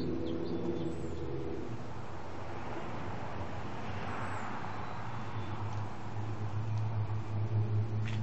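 Electric chainsaw chain sharpener (Harbor Freight Chicago Electric) running with a steady motor hum. A couple of seconds in, its spinning grinding wheel is brought down onto a chain tooth, and a grinding hiss swells, peaks midway and fades as the wheel is lifted.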